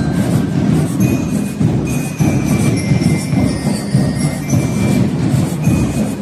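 A school marching band playing: bass and snare drums beating together under the ringing high notes of bell lyres.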